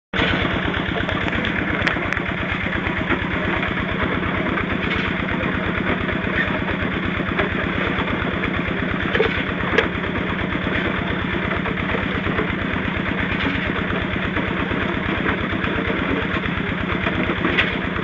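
A small engine running steadily at an even speed, with a fast regular beat and a constant low hum.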